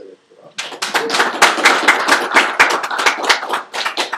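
Audience applauding: many hands clapping together, starting about half a second in and thinning out near the end.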